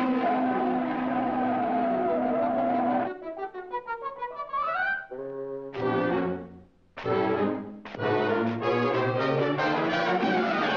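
Orchestral cartoon score led by brass. A chord is held for about three seconds, then comes a run of short notes that glides upward. Short stabbing chords follow, broken by a brief gap, and a busy full-orchestra passage starts near the end.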